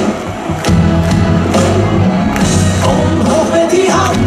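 Live pop band music over a concert sound system with a steady beat, with the crowd cheering; the music drops briefly just after the start, then comes back in full.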